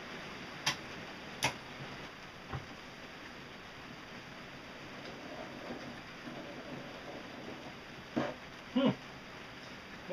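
A few sharp clicks and taps of PVC pipe fittings being handled and pushed onto the shaft of a homemade roller, over a steady low hiss, with two short louder knocks near the end.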